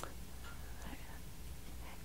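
Faint room tone with a steady low hum, and one brief click at the very start.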